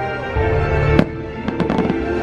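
Aerial fireworks bursting over the show's music, which holds long notes. One sharp bang comes about a second in, then a quick cluster of cracks near the end.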